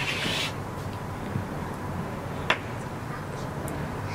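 Wooden Jenga blocks being worked loose from a stacked tower: faint rubbing of wood on wood, with one sharp wooden click about two and a half seconds in.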